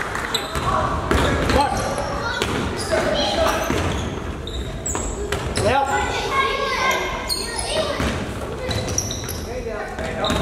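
Game sounds of youth basketball on a hardwood gym floor: the ball bouncing, sneakers squeaking and indistinct shouts and chatter from players and spectators, all echoing in the hall.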